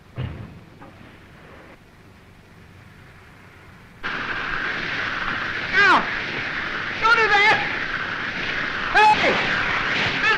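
Old film soundtrack: a thump, then a few quiet seconds. About four seconds in a louder steady din begins, with short pitched calls that fall in pitch, heard three times.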